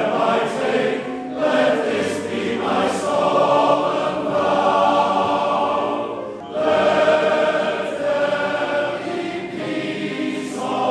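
Large male voice choir singing in full harmony, long held phrases with short breaks for breath about a second in and again past six seconds.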